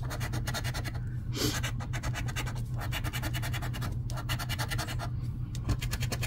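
A coin scratching the coating off a paper scratch-off lottery ticket in many quick back-and-forth strokes, with a steady low hum underneath.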